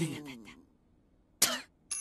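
Cartoon voices: a wincing, falling "ooh" from a group of onlookers trails off in the first half second. After a pause, a single short cough-like sound comes about one and a half seconds in.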